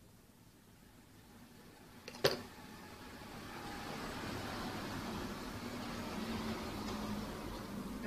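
A single sharp click, then a steady mechanical noise with a faint low hum that builds up over a second or two and holds evenly.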